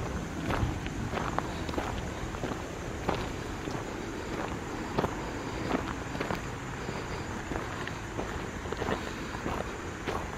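Footsteps on a gravel path at a walking pace, a string of short crunches.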